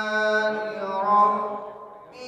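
A solo male reciter chanting without accompaniment, holding one long melodic phrase that bends slightly in pitch. The phrase fades out about a second and a half in.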